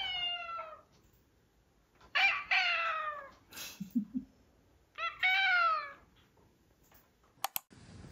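Domestic cats meowing three times in a back-and-forth exchange, each meow falling in pitch.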